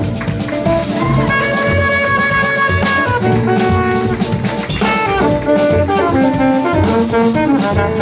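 Trumpet improvising a jazz solo over a band with drum kit: a long held note in the first few seconds, then a run of shorter notes stepping downward.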